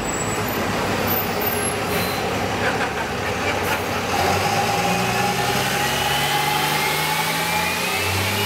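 A motor vehicle engine running close by amid street noise, with a faint rising whine over the last couple of seconds.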